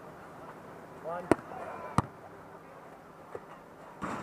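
A volleyball being hit by players during a rally: two sharp smacks about two-thirds of a second apart, a little over a second in, and a fainter hit near the end.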